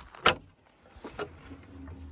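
A sharp click a quarter of a second in, then faint walking and handling noise and a low rumble near the end as a weathered wooden garden gate with an iron latch is pushed open.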